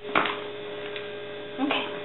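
Steady electrical hum with a sharp knock just after the start and a brief voiced sound near the end.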